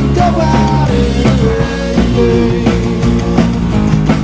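A live rock band playing: drum kit, bass guitar and strummed acoustic guitar, with a melody line that bends in pitch over a steady beat.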